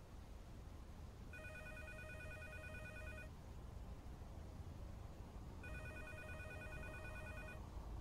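Telephone ringing faintly: two trilling rings of about two seconds each, about four seconds apart, over a low steady hum.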